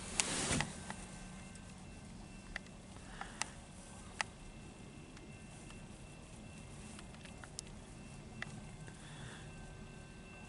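Tank cars at the tail of a slow freight train rolling away at a distance: a faint low rumble with a few scattered sharp clicks and squeaks from the wheels on the rails. A brief louder rush of noise comes in the first half second.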